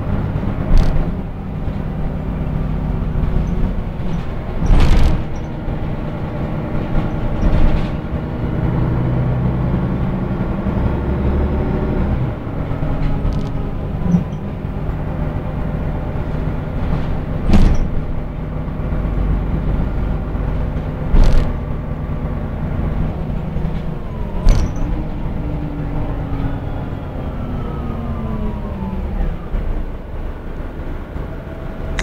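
Articulated city bus heard from inside while driving: the engine and drivetrain hum climbs in pitch as it gathers speed and falls away near the end as it slows. About six sharp knocks and rattles from the body break through along the way.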